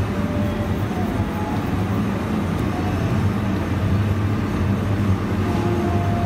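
A steady low rumble that holds at an even level, with no speech over it.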